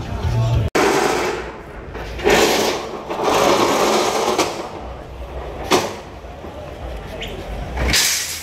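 Steel reinforcing bars scraping over a concrete floor as a worker drags a bundle of them, with one sharp metallic clank about six seconds in.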